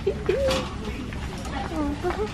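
A wire shopping cart rolling on a store floor, with a steady low rumble and light rattling clicks, under short wordless gliding vocal sounds from a voice.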